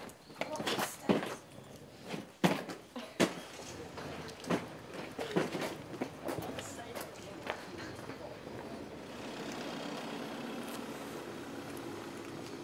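Irregular knocks and clatter of footsteps and luggage being carried and wheeled, with sharp hits in the first half. From about nine seconds in, a steadier low hum takes over, a parked car's engine running.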